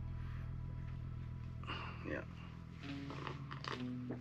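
A single short spoken "yeah" about two seconds in, over a faint, steady low background music bed.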